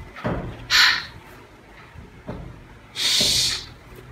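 A person sounding out phonics letter sounds without voice: a short breathy /h/ about a second in, then a longer hissed "shh" about three seconds in.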